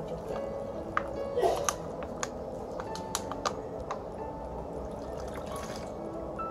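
Soft instrumental background music with a few light clicks and liquid being poured through a plastic funnel into a bottle, the pour heard near the end.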